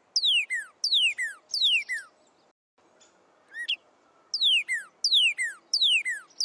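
A songbird singing runs of clear downward-slurred whistles, about two a second, with a short pause and a single rising note before the second run.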